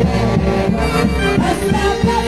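Live saxophone orquesta playing a lively Andean dance tune with a steady beat.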